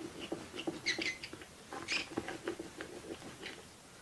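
Oil pastel stick rubbed and dabbed against paper in quick repeated strokes: light knocks about three to four a second with scratchy rasps, easing off near the end.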